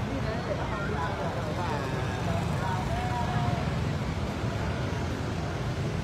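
Motor scooter traffic passing on a street, a steady low engine rumble, with people's voices talking faintly over it.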